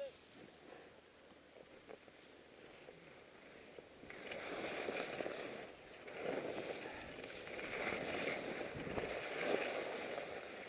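Snow hissing and scraping under a rider sliding down a steep, chopped-up ski run. It starts about four seconds in, after a faint start, and goes on as an uneven swish.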